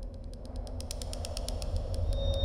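Soundtrack drone: a steady low rumble under a rapid run of sharp clicks, about ten a second, swelling towards the middle and then thinning out.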